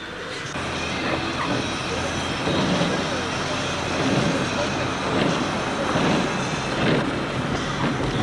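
Steady road and engine noise inside a moving car on a wet highway, a little louder from about half a second in, with faint voices underneath.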